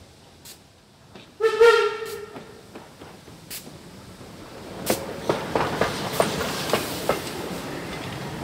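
Steam whistle of German class 64 tank locomotive 64 250: one short blast, about a second long, as the engine leaves the tunnel. The train then approaches and passes close by, with a rising rumble and steam hiss and the clack of wheels over rail joints.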